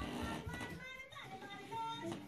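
Faint voices with some music underneath.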